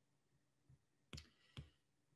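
Faint taps of a stylus pen on a tablet screen while handwriting: a soft tap, then two sharper ones about half a second apart.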